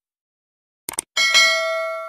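Two quick click sound effects about a second in, followed by a bright bell ding that rings on and slowly fades: the stock sound of a subscribe button being clicked and its notification bell switched on.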